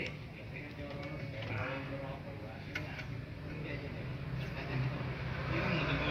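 Faint voices talking in the background over a low steady hum, with a couple of small clicks.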